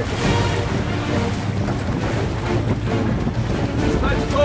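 Water rushing and splashing along the hull of a boat under way, with wind buffeting the microphone and a steady low engine drone underneath.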